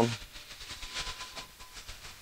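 A run of faint, irregular clicks and light metallic ticking with a little hiss: a small-block V8 crate engine being turned over slowly by hand with a long-handled wrench, bringing the number one intake valve down.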